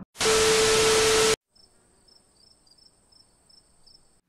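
A TV-static sound effect: a burst of hissing static with a steady tone running through it, lasting about a second and cutting off suddenly. It is followed by a faint high whine with soft pips about three times a second.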